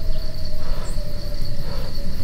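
Crickets chirping in a steady, fast-pulsing trill over a low rumble.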